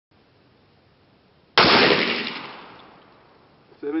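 A single shot from an FN Five-seveN pistol firing a 5.7×28mm round, about one and a half seconds in: a sharp crack whose echo dies away over about a second and a half.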